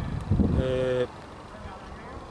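A man's short drawn-out hesitation sound, 'eh', over a low outdoor rumble that fades about a second in, leaving a faint steady background noise.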